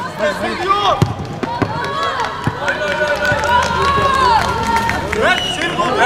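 Men's voices shouting and calling to each other across a football pitch, with a few sharp thuds of the ball being kicked in the first half.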